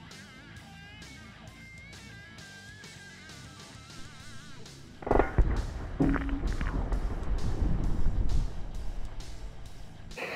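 Guitar background music, then about five seconds in a sudden loud bang as a .50 BMG armor-piercing round strikes a three-quarter-inch mild steel plate with soda cans behind it. A few seconds of loud, low rumbling noise follow.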